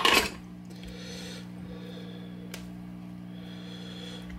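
Steady low electrical hum from the powered-up tube guitar amp, with faint handling rustles from hands working a footswitch box. A short loud noise comes right at the start and a sharp click about two and a half seconds in.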